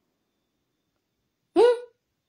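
Silence, then about one and a half seconds in a single short syllable from a woman's voice, rising in pitch.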